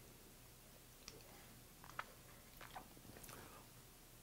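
Faint mouth sounds of a man chewing a soft bite of cheesecake square: a few soft smacks and clicks, roughly one every second, over near-silent room tone.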